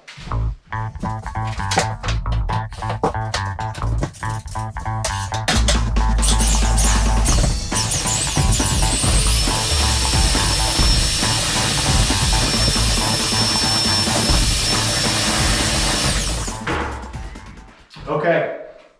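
Background music with a beat. About five seconds in, an electric drill with a paddle mixer starts up, churning drywall joint compound and water in a bucket. Its motor runs with a steady high whine for about ten seconds before stopping.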